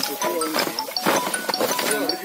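Several voices raised and talking over one another, with light clinks and a few sharp knocks mixed in.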